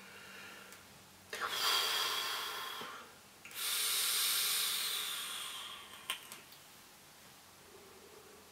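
Airy hiss of inhaling through a sub-ohm vape running at 0.28 ohms and 39 watts: two long draws, the first about a second and a half, the second about two and a half seconds and slowly fading, followed by a short click.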